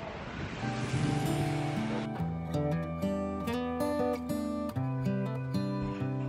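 Wind rushing over the microphone for the first couple of seconds, then background music with a steady melody takes over from about two seconds in.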